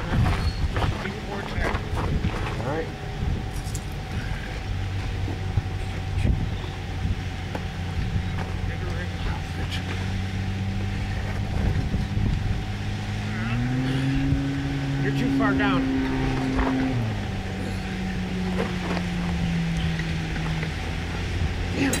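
An engine running steadily, its pitch stepping up about two-thirds of the way through, holding for a few seconds, then falling back.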